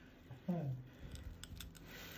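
A few faint, sharp clicks of metal surgical instruments in the second half, a short voice sound about half a second in.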